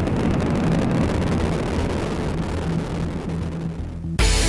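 Delta IV Heavy rocket's three RS-68A engines at liftoff: a dense, continuous low rumble laced with fine crackle, easing off somewhat over the last second.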